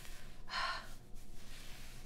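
A woman's single short, breathy gasp about half a second in, over a quiet background.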